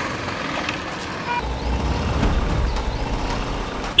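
Motorbike engines running on a street, with a deeper, louder rumble setting in about a second and a half in.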